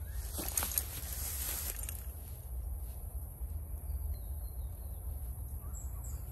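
Rustling and crackling in long dry grass during the first two seconds, over a steady low rumble of wind on the microphone, with faint bird chirps in the second half.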